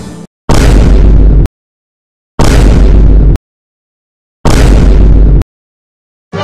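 Three loud sound-effect hits, each heavy in the bass, lasting about a second and cutting off abruptly, with dead silence between them. These are the kind of impact effects laid under title cards in a news-style edit.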